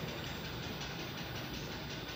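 Steady low background noise, like room tone, with no distinct events.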